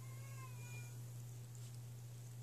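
A dog giving one faint, high whine about a second long that falls slightly in pitch, over a steady low hum.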